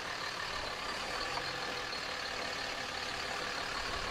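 Dodge Ram 2500 diesel pickup's Cummins inline-six turbodiesel running steadily at low speed.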